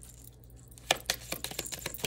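A deck of cards being shuffled by hand: after about a second of quiet, a quick, irregular run of sharp card slaps and clicks.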